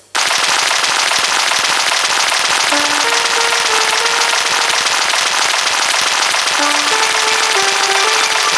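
Intro of a karaoke backing track: a loud, steady, dense crackling noise, with a few soft held melody notes rising through it about three seconds in and again near the end.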